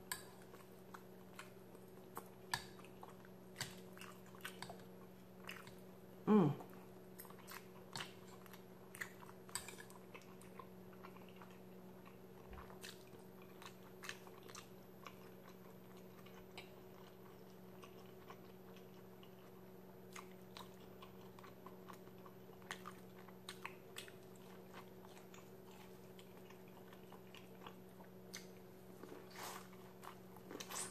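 A person eating: faint chewing and biting, with scattered small mouth clicks, including bites of corn on the cob. About six seconds in comes a brief falling hum of the voice, the loudest moment.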